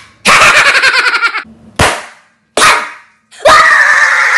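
A man's fast, staccato laughter, then two short vocal bursts, then a long, loud yell that starts near the end.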